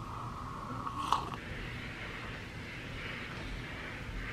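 A sip from a mug with a short slurp, ending in a small click about a second in, followed by a faint steady hiss.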